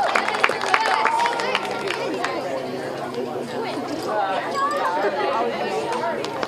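Several people chatting, with scattered hand claps in the first couple of seconds that die away.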